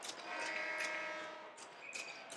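A faint, steady horn-like tone with several overtones, held for about a second and a half, with a few light clicks around it.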